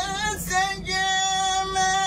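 A young man's high, clear voice chanting Quranic recitation. A short wavering ornament breaks off about half a second in, then he holds one long steady note.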